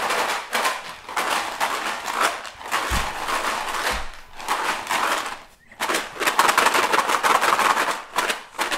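Dried beans rattling inside a homemade paper-plate tambourine as it is shaken, in fast rattling bursts with a short break a little past halfway. Two dull knocks come around the middle.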